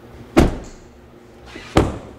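Two car doors shutting with solid thumps about a second and a half apart, on an armoured Audi Q5 hybrid SUV.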